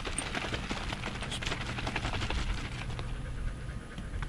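Squeeze bottle of black tie-dye shaken hard by hand, the liquid sloshing inside in a fast run of short strokes that dies down about three seconds in.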